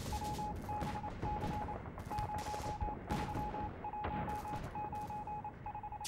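Scattered gunfire, single shots and short bursts, over a steady on-off beeping tone in uneven dots and dashes like a Morse code telegraph signal.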